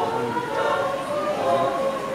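A group of people singing together in long, held notes, with several voices blending.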